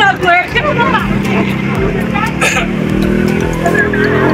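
A motor vehicle's engine running steadily after a brief bit of voices at the start, its pitch beginning to rise near the end as it speeds up. There is a short sharp noise in the middle.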